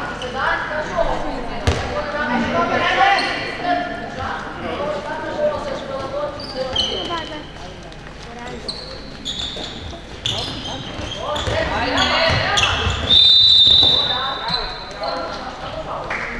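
Sounds of a handball game in an echoing sports hall: players shouting, the ball bouncing on the wooden floor, and shoes squeaking. Late on there is a loud, high, steady tone lasting about a second.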